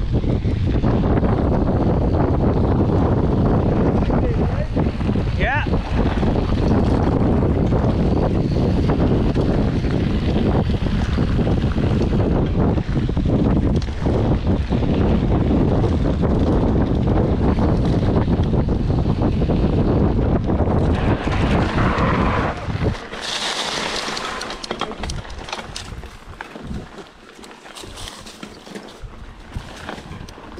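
Wind rushing over an action camera's microphone and knobby mountain bike tyres rumbling on a gravel track at speed. About 23 s in the rush drops away as the bike slows onto a narrow trail, leaving quieter tyre crunch and bike rattle.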